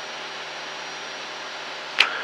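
Steady drone of a Cessna 172's engine and propeller in flight, heard in the cabin as an even hiss over a low hum.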